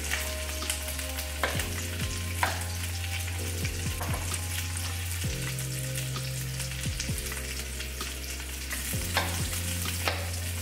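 Chicken searing in avocado oil in a skillet, a steady sizzle, with a few sharp knocks of a chef's knife cutting through onion and jalapeño onto a bamboo cutting board.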